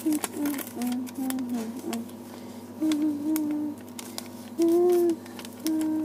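A person humming a tune in short held notes that step up and down in pitch, with light clicks and taps of handling in between.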